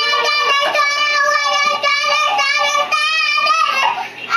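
A toddler girl singing loudly into a toy voice-amplifier microphone, holding long notes.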